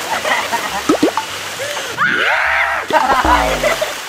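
Water splashing in a swimming pool, with voices calling out excitedly over it.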